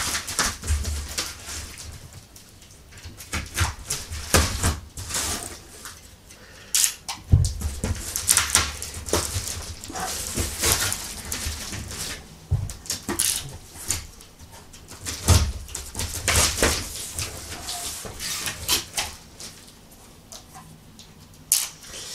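A cardboard shipping box being cut and torn open: packing tape slit and ripped off, and flaps pulled apart, in an irregular run of short rips, scrapes and rustles with a few dull knocks as the box is handled.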